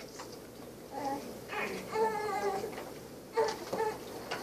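A young child's faint, high-pitched fussing cries from within the room, a few short ones with the longest about two seconds in.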